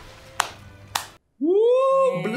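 Two sharp clicks, then after a brief dropout a drawn-out voice-like cry that rises in pitch and holds.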